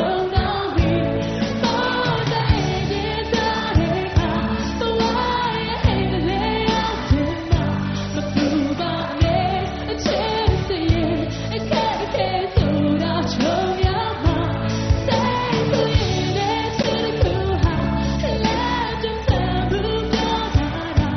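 A woman singing a Burmese pop song with a band of electric guitars and drums, over a steady beat.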